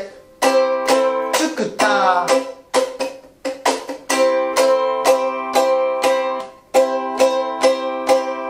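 Ukulele strummed on a C chord in a cutting style: sharp muted percussive strokes between ringing chords, while the 4th string steps between open and the 2nd fret (0-2-0) to make a small intro melody.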